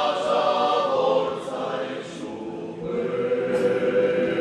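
Sardinian male folk choir singing unaccompanied in close harmony, holding long chords. The sound dips about two seconds in, then a new chord swells and is held.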